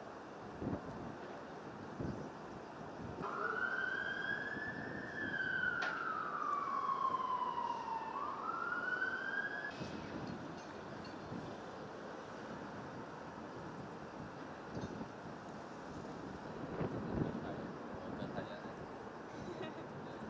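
An emergency vehicle's siren wailing: one slow rise and fall, then rising again before it cuts off, over steady wind noise on the microphone.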